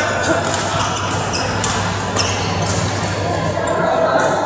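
Busy indoor badminton hall: irregular sharp hits of rackets on shuttlecocks, several a second, from play on nearby courts, over background voices and a steady low hum in a reverberant hall.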